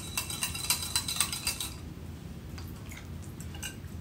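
Wire whisk beating a thin liquid marinade in a ceramic bowl, its wires clicking rapidly against the bowl, stopping about a second and a half in; a few faint taps follow.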